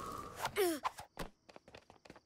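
A cartoon boy's voice lets out a dejected "ugh" that falls in pitch. It is followed by a scattering of light taps and knocks.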